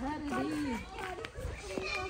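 Overlapping voices of people chatting, with no clear words, among them high children's voices.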